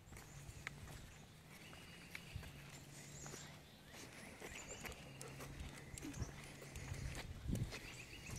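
Quiet sounds of a dog walk on a leash: light footsteps and scattered small clicks from the dog and walker, a few heavier steps near the end, over a faint steady low hum.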